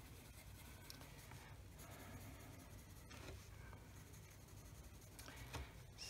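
Faint scratching of a Koh-i-Noor coloured pencil worked over watercolour-painted paper while detailing, under a low steady room hum.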